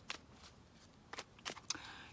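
Tarot cards being handled: about four faint, short clicks of card against card, one just after the start and three close together in the second half.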